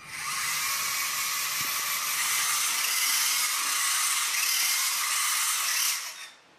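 A VEX EDR robot's small electric drive motors and gearing give a loud, steady high-pitched whine as it drives through a 90-degree turn, overshooting and swinging back around the new heading. The whine starts abruptly and cuts off at the end.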